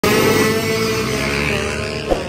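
Motor scooter engines running, loud and steady.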